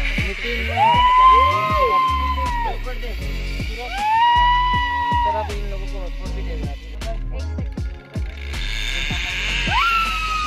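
Background hip hop music with a heavy bass and tones that slide up, hold and fall away, repeating every few seconds.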